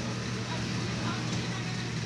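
A steady low hum over a constant background noise, with faint voices in the background.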